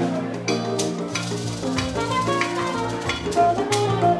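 Live fuji band playing instrumental music, with drum kit hits and cymbals over an electric bass line and sustained pitched notes.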